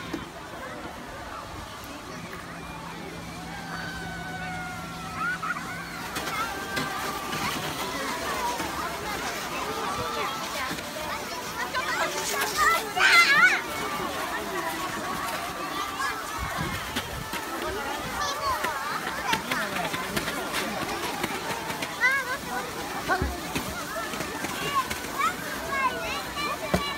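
Children's and adults' voices calling out and chattering while sledding down a snow slope, with one louder, high-pitched cry about halfway through.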